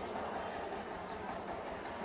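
A crowd walking along a paved street: many irregular footsteps with a low, indistinct hubbub of people.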